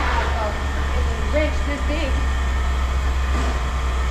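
Faint, distant talk over a steady low rumble; no hammer blows.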